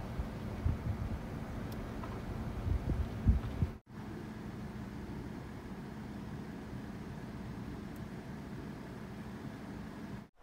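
Steady low outdoor hum with a few low thumps in the first three and a half seconds. The sound cuts out for an instant a little before four seconds in, then the steady hum carries on.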